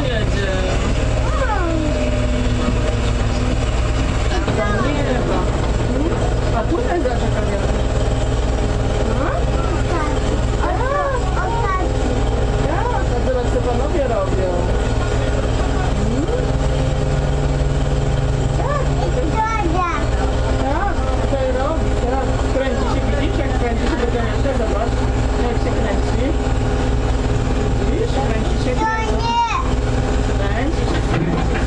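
Steady low rumble of diesel construction machinery running on a building site, with voices heard over it.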